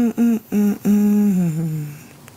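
A woman humming with closed lips: three short notes, then a longer note that slides down in pitch.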